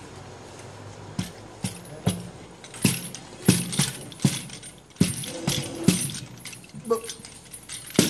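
Small wooden hand-held divination chair (hand palanquin) knocking against the tabletop as two men guide it in spirit-writing. There is a string of sharp, irregular knocks, about one or two a second, beginning about a second in.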